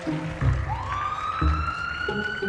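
A siren winding up: a wailing tone that starts about a second in, sweeps up quickly and then keeps climbing slowly, over two low thuds.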